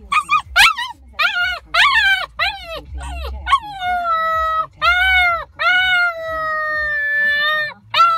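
Eight-week-old husky-malamute puppy yipping in short calls, then breaking into howls that grow longer, ending in one steady howl of about two seconds near the end.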